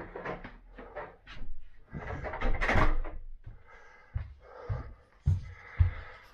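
Household handling noise: rustling and knocking, loudest about two to three seconds in, then footsteps on a wooden floor, about two steps a second, near the end.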